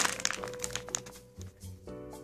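A plastic chocolate-chip bag crinkling as a hand crumples and shakes it, over background music. The crinkling stops about halfway through.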